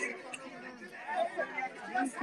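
Indistinct chatter of several voices talking at once, with no clear words.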